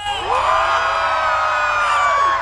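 Concert audience cheering and screaming, starting a moment in, with many voices holding long high cries together.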